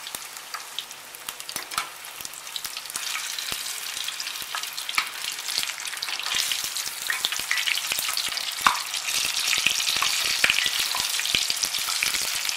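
Besan-battered paneer sticks deep-frying in hot oil in a steel kadai: a steady sizzle full of crackles and pops that grows louder after the first couple of seconds. One sharp knock sounds about two thirds of the way in.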